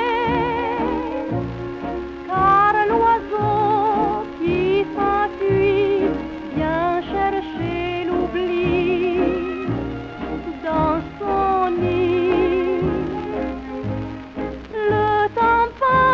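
Instrumental passage of a 1938 French popular song playing from a 78 rpm shellac record on a turntable. A melody with a wide vibrato rides over a steady, even bass beat.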